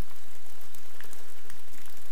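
Steady rain falling: an even hiss with scattered faint drop ticks, over a steady low rumble.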